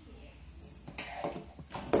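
Quiet room tone with a low hum, then a man's voice speaking from about halfway through.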